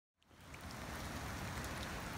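Steady moderate rain falling on wet asphalt and a concrete gutter, with a few faint drop ticks. It fades in from silence at the very start.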